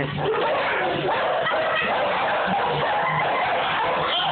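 Dogs barking and growling as they go at a taxidermy deer head held out to them.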